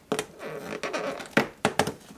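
Fingers and fingernails scratching and picking at the perforated cardboard door of an advent calendar, with three sharp snaps in the second half as the cardboard starts to tear open.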